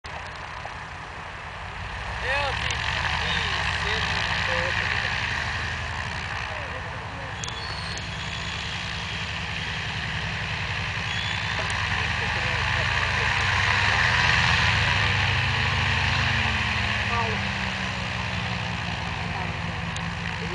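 Antonov An-2 biplane's nine-cylinder radial engine running at low power while the aircraft taxis to park. It swells sharply about two seconds in, is loudest around the middle, and eases a little near the end.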